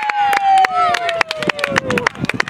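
A spectator's long, drawn-out cheer of "Hey!", sliding slowly down in pitch, over fast hand clapping, about six claps a second, cheering a young player's run at goal.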